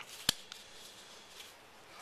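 A single sharp tap of a pencil on paper about a third of a second in, then faint rustling as a folded strip of paper is handled and lifted off the drawing sheet.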